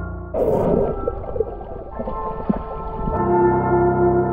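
Muffled underwater noise of moving water and bubbling, picked up by a camera held under the surface, starting suddenly just after the start with a few sharp clicks. Faint sustained ambient music runs beneath and swells back up near the end.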